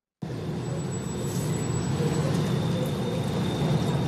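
Rough, low growling and slurping rising steadily from a sidewalk vent grating; it starts abruptly just after the beginning. It is said to be a sump pump in a transformer vault under the street sucking out rainwater.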